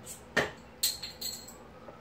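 A glass beer bottle being picked up and handled: a short knock, then a light clink with a brief ring about a second in.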